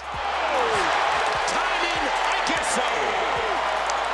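Arena crowd noise during an NBA basketball game, with a basketball bouncing on the hardwood court every so often and sneakers squeaking in short falling chirps.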